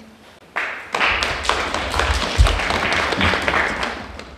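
Audience clapping, a dense patter of many hands, starting about half a second in, with a low thump near the middle.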